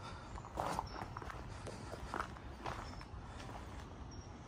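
Footsteps on dirt ground, uneven steps about every half second.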